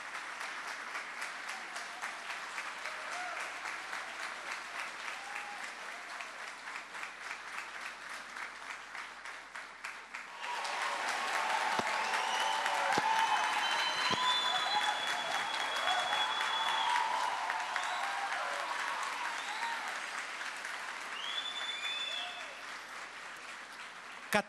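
Audience applauding steadily. About ten seconds in it swells louder, with cheering voices and a few long high whistles over the clapping, then eases off toward the end.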